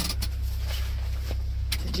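Car engine idling, a steady low hum heard inside the cabin, with a few light clicks and clothing rustle from people moving at the back seat.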